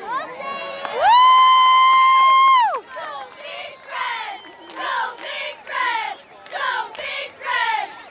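Group of cheerleaders, girls and young children, shouting a cheer in unison as a regular run of short chanted phrases, about two a second. It opens with one long, loud, high-pitched yell held for about two seconds.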